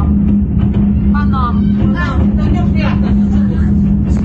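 A steady, loud low rumble with a constant droning hum, and a person's voice speaking now and then over it.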